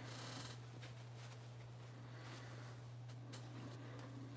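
Quiet room tone with a steady low hum, and faint rustling and a few small clicks from a cloth rag being picked up and handled.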